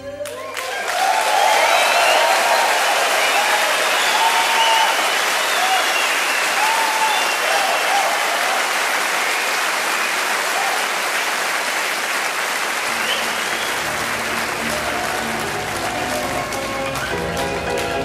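Concert audience applauding and cheering, with shouts and whoops over the clapping. About two-thirds of the way through, music with steady sustained notes starts quietly underneath the applause.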